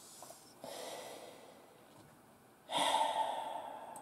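A man breathing out heavily twice. The second breath, near the end, is louder and starts suddenly, and each one fades over about a second.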